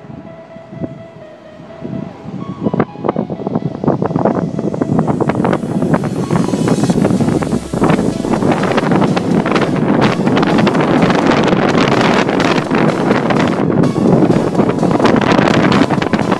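Wind buffeting the microphone inside an open-sided Jeep driving over sand. The noise is quiet at first and turns loud and rough about three seconds in.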